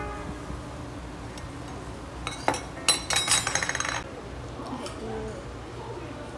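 Stainless steel tableware clinking: a few sharp clinks a little over two seconds in, then about a second of bright, ringing metallic rattle made of rapid repeated clinks that stops about four seconds in.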